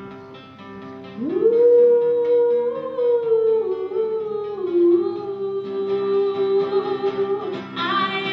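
A woman singing one long wordless note into a microphone: she slides up to it about a second in, holds it, then steps down to a lower note that she holds until near the end. Underneath are sustained chords from an acoustic guitar and a wind band.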